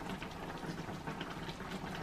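Rohu fish curry gravy simmering in a pan: a steady soft bubbling with many small pops.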